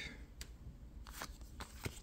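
Pokémon trading cards being slid and handled in the hand: a faint papery rustle with a few soft ticks.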